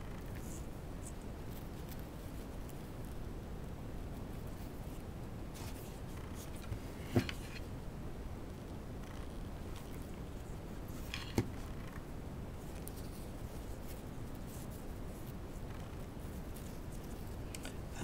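Crinkle ribbon rustling and crackling faintly as it is pleated and pressed down, with two sharp clicks about seven and eleven seconds in, over a steady background hiss.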